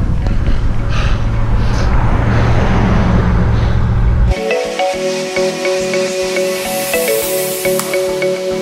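Wind rushing over an action camera's microphone on a moving bicycle, a heavy low rumble. About four seconds in it cuts off suddenly to background music with a steady beat.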